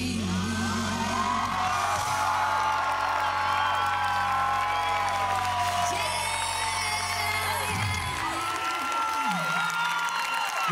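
A live band's final sustained chord ringing out under cheering and whooping from a large concert crowd. The band's low note stops about eight seconds in, leaving the crowd's cheers.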